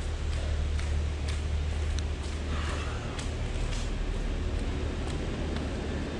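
Footsteps of someone walking on a towpath, faint and uneven, over a steady low rumble.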